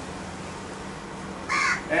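A crow cawing once, loud and harsh, about one and a half seconds in, after a stretch of quiet room tone.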